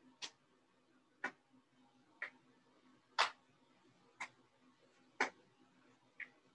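A person doing jumping jacks: a short, sharp sound with each jump, evenly spaced about once a second, with near silence between.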